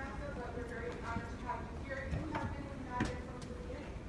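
Low, indistinct talking with a few scattered sharp clicks, the loudest about three seconds in.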